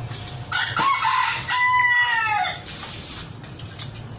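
A rooster crowing once, a call of about two seconds that rises, holds and falls away at the end.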